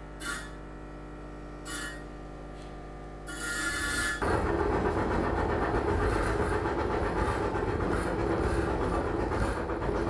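Live electroacoustic noise improvisation on homemade electronics and a small loudspeaker driver with an object resting on its cone. A steady electrical hum with a few short bursts of hiss gives way, about four seconds in, to a louder, dense, rough noise texture.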